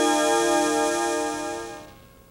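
Opening music: a held synthesizer chord with a slow pulsing shimmer, fading away over the last second.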